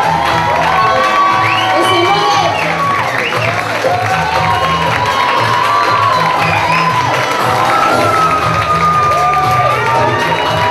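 Loud music with a pulsing bass beat, over a crowd cheering and shouting.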